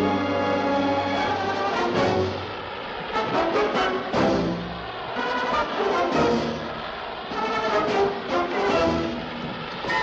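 Orchestral film-score theme music, with held notes that swell and fall back every couple of seconds.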